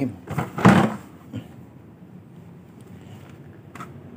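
A cloth wrapping being pulled out of a plastic bucket, rustling and scraping against the rim, with a couple of light knocks.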